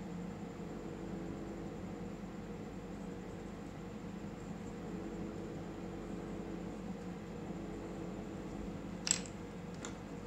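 Steady low hum of room background noise, with a single brief crisp sound about nine seconds in.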